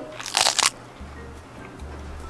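A single short crunch of toasted sandwich bread about half a second in, followed by faint background music.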